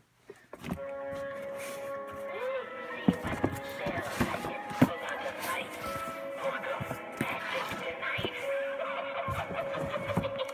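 Tinny electronic-toy playback from a small speaker: music and a recorded voice with a held tone, and a few sharp clicks in the middle.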